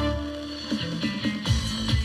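Music from an FM radio broadcast, played through a car stereo. A thinner passage gives way, about a second and a half in, to a song with a regular low beat.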